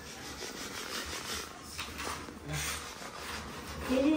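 A hand rasp scraping over a white strip of building material in repeated strokes.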